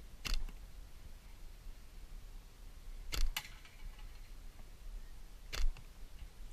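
Natural-fork slingshot with 1745 tubing being shot in quick succession: three sharp snaps, about two and a half seconds apart, the middle one followed at once by a second click.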